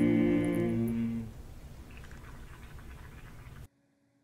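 Teen a cappella group's voices holding a closing chord, which fades out about a second in; after it, faint room noise until the sound cuts off abruptly near the end.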